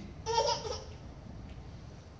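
A brief vocal sound, a half-second pitched burst about a quarter of a second in, followed by quiet room tone.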